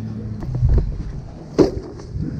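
Handling noise on the microphone: low rubbing and rumbling, with one sharp knock about a second and a half in.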